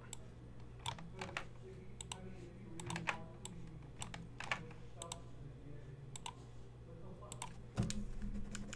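Computer keyboard typing and mouse clicks: scattered, irregular clicks over a faint steady low hum.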